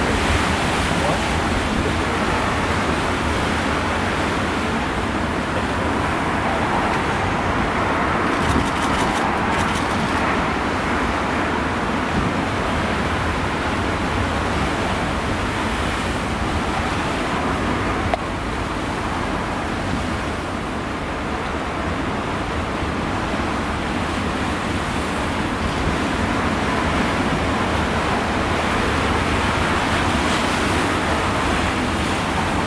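Heavy storm surf breaking over rocks and a harbour breakwater, with storm wind: a loud, steady, unbroken wash of wave noise.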